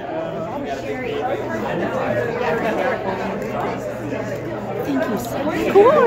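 Chatter of several people talking at once, with a steady low hum underneath.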